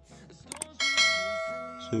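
A quick double click, then a bright bell ding that rings and fades over about a second. This is the click-and-bell sound effect of a subscribe-button animation.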